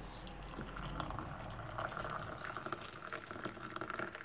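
Hot water poured from a metal kettle into a cup to brew tea, a steady splashing trickle.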